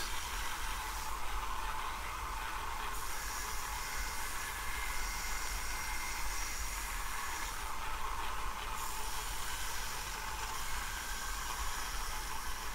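Small bench belt sander running, its abrasive belt grinding the edge of a brass plate held against it: a steady hiss.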